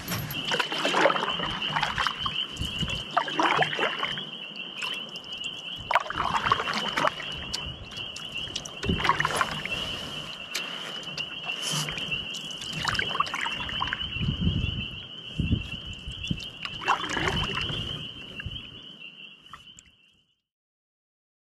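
Canoe paddle strokes in the lake water, a swish and splash about every three to four seconds, fading out near the end.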